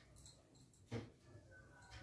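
Near silence: faint rustling of hair being gathered and held by hand, with one soft knock about a second in.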